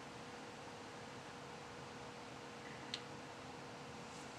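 Faint, steady hiss and low hum of a Dell Inspiron 530 desktop's rear exhaust fan, running hard to cool a CPU that has no cooler. A single faint click about three seconds in.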